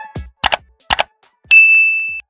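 Subscribe-button animation sound effects: a soft thump, two sharp mouse clicks about half a second apart, then a notification-bell ding about one and a half seconds in that rings on as one steady high tone.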